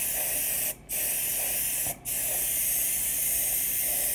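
Airbrush spraying paint: a steady hiss of air that breaks off briefly twice, about a second and two seconds in, as the trigger is let go.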